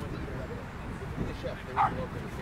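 A dog barks once, a single short yelp near the end, over a steady low background rumble.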